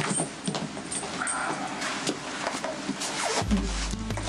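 Soft scattered rustles and nonverbal vocal sounds, then music starts playing from a radio with a low, steady bass about three and a half seconds in.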